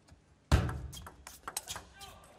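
Table tennis rally: a sudden loud knock about half a second in, then a quick string of sharp clicks of the celluloid-type plastic ball off rubber-faced rackets and the table.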